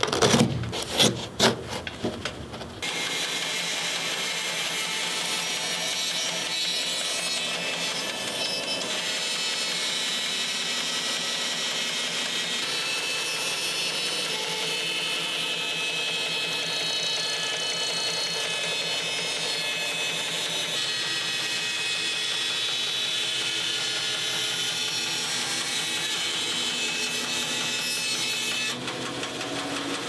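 A couple of seconds of hands rubbing and scraping at a leather boot's upper. Then a bandsaw runs steadily, cutting through a leather hiking boot and its rubber lug outsole. The saw starts about three seconds in and cuts off abruptly shortly before the end.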